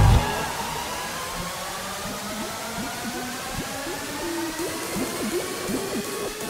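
Breakdown in a hardcore gabber DJ set: the pounding kick cuts out just after the start, leaving a rising noise sweep with slowly climbing synth tones and short warbling electronic squiggles, building toward the next drop.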